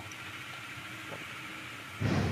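Steady background hiss with a faint low hum.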